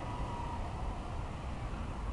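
Steady outdoor background noise: a low rumble under a soft hiss, with no distinct events.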